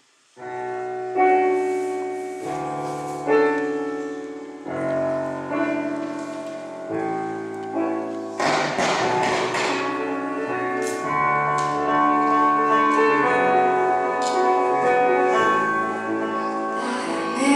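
Live band playing a song's instrumental intro: sustained chords starting about half a second in and changing every two seconds or so. About eight seconds in, the rest of the band comes in and the sound gets fuller.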